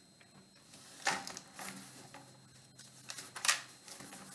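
Quiet, short rustles and taps of thin Bible pages being leafed through to find a passage: once about a second in, and a few more around three and a half seconds.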